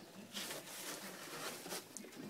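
Faint rustling and light scratching in a wire rabbit cage as a hand reaches in for the rabbit, with a short scrape about a third of a second in and a small click near the end.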